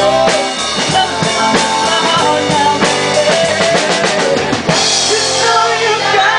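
Live rock band playing an instrumental passage, drum kit to the fore with a steady beat over bass and guitar. A cymbal wash comes in about five seconds in.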